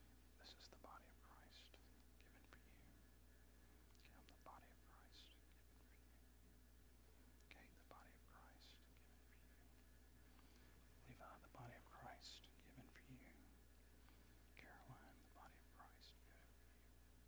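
Near silence: room tone with a steady low hum, and faint whispered phrases now and then, a little more of them about two-thirds of the way in.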